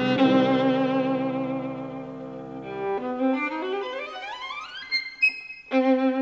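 Violin music: long held notes with vibrato over a low sustained note, then a quick rising run of notes about three seconds in, a few short high notes, and a new held note near the end.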